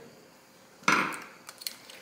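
Small tools and parts handled on the workbench: one short scraping knock about a second in, then two light clicks.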